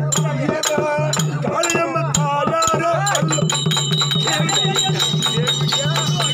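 Live Therukoothu accompaniment: a steady low drone under a bending melodic line, with quick drum strokes and a rattling jingle. A steady high tone joins about three seconds in.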